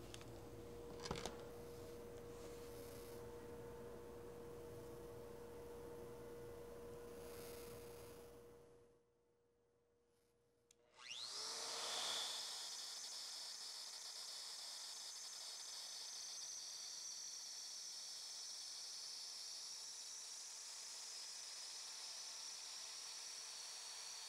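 Shaper Origin handheld CNC router's spindle spinning up with a rising whine about eleven seconds in, then running steadily with a high whine while taking a very light finishing cut in wood. Before it, a faint steady hum, then a moment of silence.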